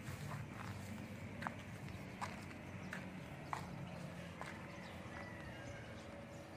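A series of sharp, irregularly spaced clicks or knocks, about seven in six seconds, over a low steady hum.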